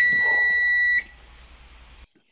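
Electronic oven beep: one steady high-pitched tone held for about a second, then cut off. It is the oven signalling that it has preheated and is ready for the turkey.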